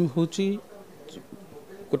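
A man speaking into press microphones: a short burst of speech, then a pause of about a second and a half before he speaks again at the end.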